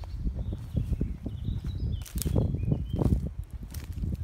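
Footsteps and brushing through dry woodland undergrowth, leaves and twigs crackling irregularly, with a sharper snap about two seconds in and another near three seconds. A steady low rumble on the microphone runs under it.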